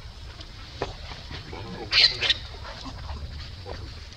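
Baby macaque crying: faint short whimpers, then two sharp, high-pitched squeals in quick succession about halfway through.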